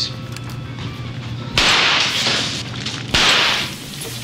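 Two gunshots about a second and a half apart, each a sharp bang with a short reverberating tail, over a steady low hum.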